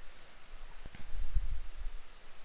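A few clicks and soft low thumps, such as desk or microphone handling noise, with no speech.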